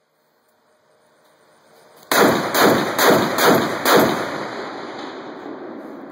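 A Barrett .50 BMG rifle fires a shot about two seconds in: a sudden, very loud report. Several pulses of rolling echo follow over the next two seconds, then fade out slowly.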